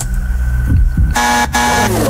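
Quiz-show buzzer sound effect played over the radio, sounding about a second in as two buzzes with a short break between them. It marks a wrong answer.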